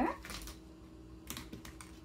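A few light clicks and taps of small craft items being moved on a tabletop as the work area is cleared, mostly in the second half.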